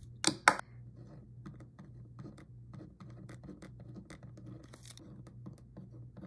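Fine-tip pen scratching on paper in short strokes as words are written on an ink-swatch card. Two sharp clicks near the start are louder than the writing.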